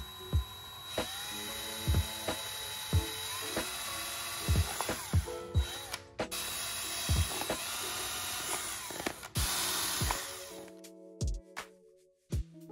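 Power drill running as it bores through a thin hardboard panel, in two runs of about four to five seconds each with a short break around the middle. Background music with a steady beat plays throughout.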